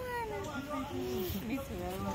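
Voices of people and children talking over one another in the background, no one close to the microphone.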